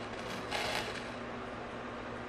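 Quiet room tone with a steady low hum, and a brief soft hiss about half a second in.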